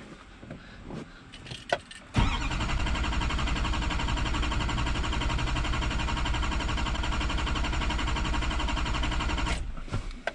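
Starter cranking the 2001 Silverado 3500HD's LB7 Duramax V8 diesel: a couple of clicks, then about seven seconds of steady, even cranking that never catches and stops just before the end. It won't fire because the fuel system has lost prime and is air-locked, with no fuel pressure.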